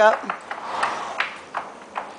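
A few faint, sharp knocks from the bay gelding's hooves shifting on straw-bedded dirt as he is asked to back up, with a light metallic jingle from his bridle.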